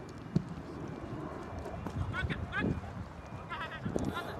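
Soccer players' short shouted calls across the pitch, a couple of brief bending shouts in the second half. A single sharp thump of a ball being kicked comes about a third of a second in.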